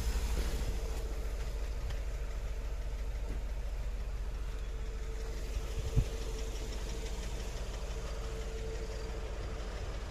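A car engine idling steadily, heard as the door stands open, with a faint steady hum over it. A single thump comes about six seconds in.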